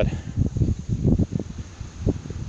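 Wind buffeting an outdoor microphone: irregular low rumbles and thumps with no steady rhythm.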